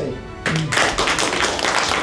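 Audience applauding, the clapping starting about half a second in and carrying on steadily.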